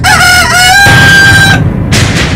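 A rooster crowing: a few short rising notes, then one long held note that breaks off about a second and a half in. A loud low rumbling noise comes in under the held note.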